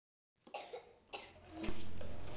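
A child coughing twice, two short coughs about half a second apart. A low steady tone comes in near the end.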